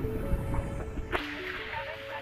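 An edited transition sound effect: a falling swoosh, then a single sharp whip-like crack about a second in. After it comes background music with a simple melody of held notes.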